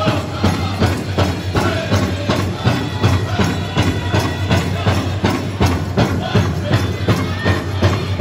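Powwow drum group singing with a steady, quick beat on the big drum, for a traditional dance contest song.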